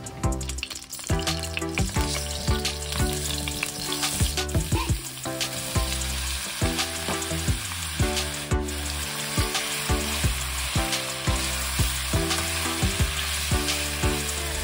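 Julienned potato, carrot and Spam strips sizzling in hot oil in a wok. The sizzle swells about a second in as the food goes into the pan, and the strips are then stirred with a spatula. Soft background music plays underneath.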